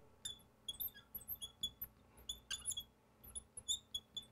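Neon marker squeaking on a glass lightboard while writing: a loud marker giving a quick, irregular string of short, high squeaks with each stroke.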